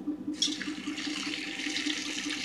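A stream of water splashing onto flattened rice (poha) in a steel bowl to soak it. The steady pouring starts about half a second in.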